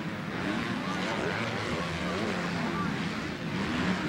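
Ambient race sound of 250-class motocross bike engines revving up and down on the track, heard at a distance.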